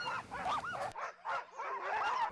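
Excited sled dogs in harness yelping, several high cries that rise and fall in pitch, with a short lull about halfway through.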